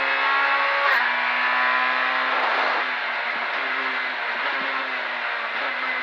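Proton Satria S2000 rally car's 2-litre four-cylinder engine running hard at high revs, heard from inside the cabin. A quick gear change comes about a second in, then the engine pulls on steadily.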